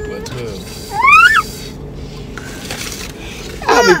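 High-pitched voice sounds: a short rising squeal about a second in and a falling vocal glide near the end, over the low hum of the car cabin.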